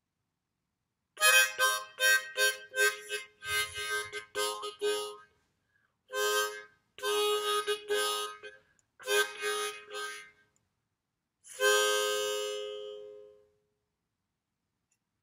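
Hohner harmonica played in place of speech: quick, choppy groups of notes that follow the rhythm and phrasing of a spoken sentence, broken by short pauses. Near the end comes one longer held note that fades out.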